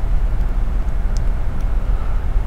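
Steady low background rumble, with one faint tick about a second in.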